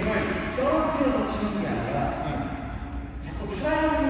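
Speech: a voice talking in a large, echoing indoor tennis hall.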